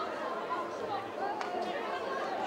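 Indistinct voices calling and chattering over the steady background of a football ground, with no clear words. A faint click sounds about one and a half seconds in.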